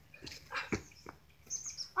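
A few short thuds of a basketball bouncing on a concrete driveway, the strongest about three-quarters of a second in, with brief high bird chirps near the end.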